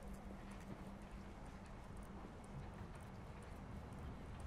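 Footsteps walking at a steady pace on a paved concrete path, faint and evenly spaced, over a low steady hum.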